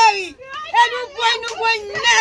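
A woman speaking loudly and excitedly in a high-pitched voice.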